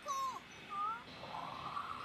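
High-pitched character voice from the anime soundtrack: a short sliding cry at the start and a brief rising one just before a second in. A soft rushing sound follows in the second half.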